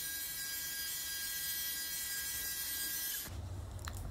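Belt grinder running steadily, a thin high whine over a steady hiss, cutting off abruptly a little over three seconds in.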